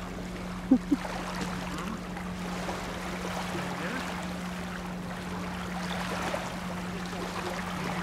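Gentle water sounds around a stand-up paddleboard as the paddle dips, under a steady low hum. Two short pitched calls come about a second in.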